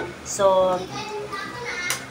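Speech: a woman says a single word early on, with fainter voices behind it, and a short sharp click near the end.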